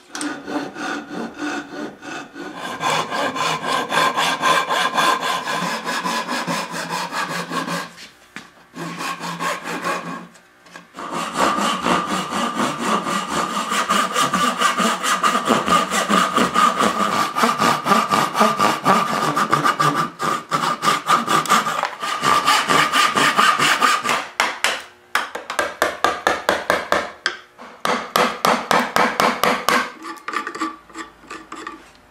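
Hand saw cutting into a hardwood block with rapid back-and-forth strokes in several runs, broken by brief pauses. The cuts are the kerfs for the knuckles of a replacement wooden hinge.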